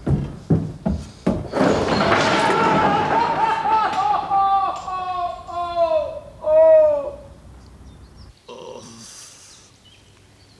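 A few sharp knocks, then a big bird puppet character's long wordless wail that slides down in pitch and breaks into short pulses before it stops.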